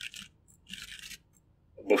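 Faint computer keyboard typing: short runs of quick key clicks, one at the start and another about a second in.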